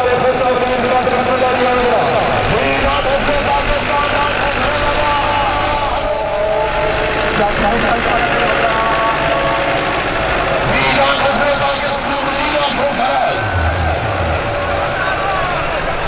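Diesel farm tractor engines running steadily under load as they drag cultivators through soft dirt, heard over the noise of a large crowd and a voice.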